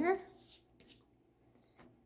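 A voice trails off in a drawn-out syllable at the very start. It is followed by a few faint rustles and taps of hands pressing masking tape down onto drawing paper.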